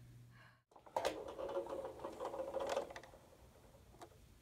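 A truck engine running with a rhythmic buzz. It starts about a second in and fades out around three seconds in.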